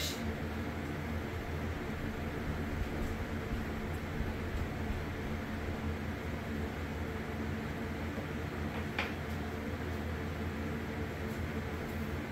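Steady low hum of kitchen background noise, with one faint click about nine seconds in.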